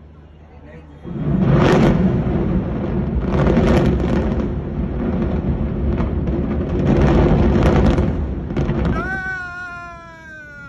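Controlled explosive demolition of two high-rise concrete towers: the charges fire and the towers collapse, heard as a loud rumble that starts suddenly about a second in, surges several times and dies down after about eight seconds. Near the end a long pitched wail starts and slowly falls in pitch.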